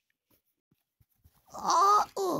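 A child's wordless vocal sound, a drawn-out pitched 'ooh' that rises and then holds, starting about a second and a half in after near quiet with a few faint taps.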